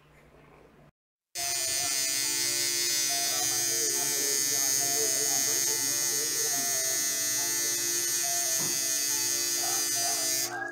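Electric tattoo machine buzzing steadily and loudly, starting suddenly about a second in, with faint voices underneath.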